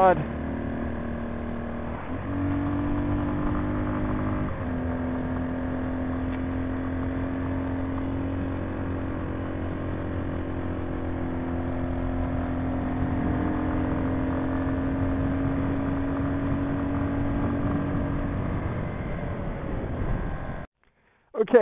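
Big Boy TSR 250's 223 cc four-stroke engine pulling under way on the road, heard from the rider's position with wind rush underneath. The engine note steps up about two seconds in and dips briefly a couple of seconds later. It then holds steady and climbs slowly, and eases off near the end.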